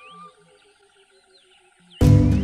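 Faint high chirping calls with curling, whistled rises and falls, over the quiet, fading tail of background music.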